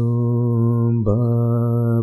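A man's voice chanting an Ismaili ginan (devotional hymn) in slow, melodic recitation, holding one long note with a brief dip and rise in pitch about a second in.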